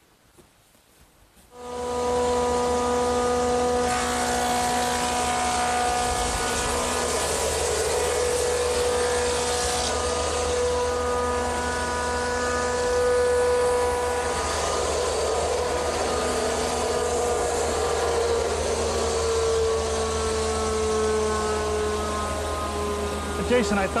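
Industrial woodworking machinery in a lumber mill shop running steadily, a low hum under a whine of several held tones. It starts abruptly about a second and a half in, and the main whine sags slightly in pitch near the end.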